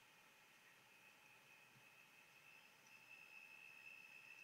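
Near silence: a faint steady hiss with a faint, steady high-pitched whine.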